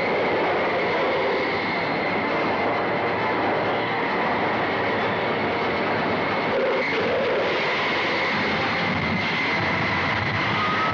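Moving train on a film soundtrack: steady, dense rail noise with a shrill, unbroken high tone running through it.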